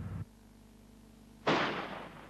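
A G5 155 mm towed howitzer fires one round about one and a half seconds in: a sudden loud blast that then fades, after a quiet stretch.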